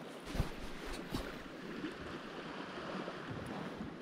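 Steady hiss of rain and small waves lapping against a concrete quay, with two low thumps in the first second or so.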